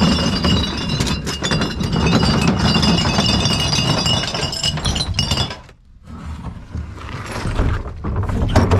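Glass bottles and aluminium cans clattering and clinking in a dense rush as a plastic wheelie bin is tipped out onto a heap of bottles and cans. The rush stops suddenly about five and a half seconds in, and quieter knocks from the bin follow.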